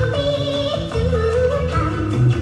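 Stage-show music: a high voice singing a wavering melody over an accompaniment with a steady bass line.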